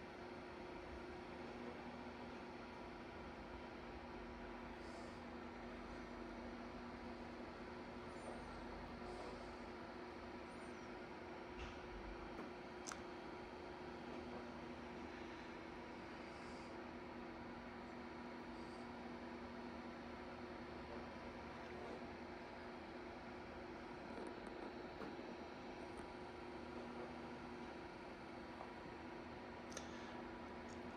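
Quiet room tone: a steady low electrical hum with a few faint, scattered clicks.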